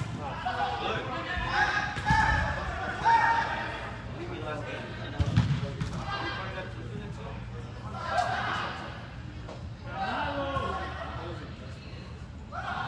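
Indoor soccer being played in a large hall: players' voices calling out across the arena, with a few dull thuds of the soccer ball, the loudest about five seconds in.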